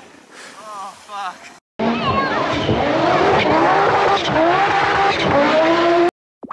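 A rally car's engine revving hard, its pitch rising and falling through the gears. It starts suddenly about two seconds in, after faint voices.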